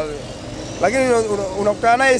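A man speaking in a street interview, pausing briefly about half a second in and then carrying on, with busy street and traffic noise behind.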